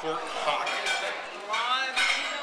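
Restaurant background clatter of dishes and cutlery clinking under a man's voice.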